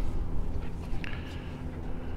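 Low, uneven rumble of wind on the microphone, with a faint higher hiss in the second half.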